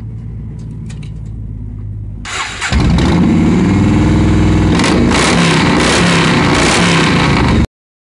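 Yamaha Road Star 1700 V-twin cruiser engine starting through an aftermarket exhaust: a short crank a little over two seconds in, then it catches and runs loud and steady until it cuts off suddenly near the end.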